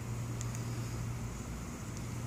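A steady low mechanical hum under faint background noise, with a small click about half a second in.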